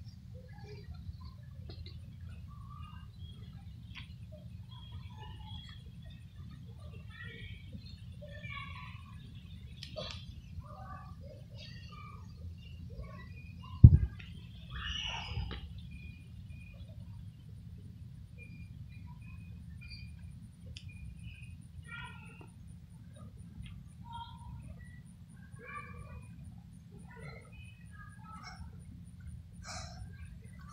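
Outdoor ambience of birds chirping here and there over a low steady rumble, with one loud thump about fourteen seconds in.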